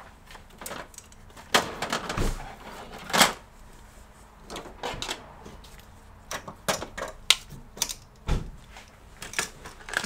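Irregular clicks, knocks and rattles of plastic spring clamps being picked up and handled, with a few louder knocks scattered through.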